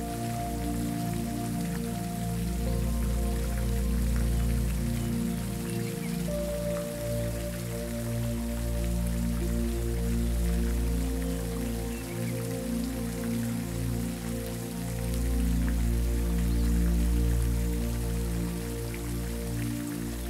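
Water from a pond fountain spraying and pattering onto the pond's surface, like steady light rain, over soft, sustained ambient music.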